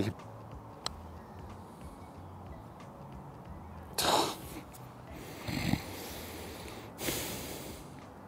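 Low outdoor background with a single faint click about a second in and three short breathy noises: the loudest about four seconds in, another about a second and a half later, and a longer one near the end.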